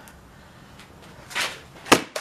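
A plastic bottle swollen with gas from yeast fermenting sugar water is struck with a hammer: a softer noise about one and a half seconds in, then a sharp, loud bang near the end as the pressurised bottle bursts and sprays yeast foam.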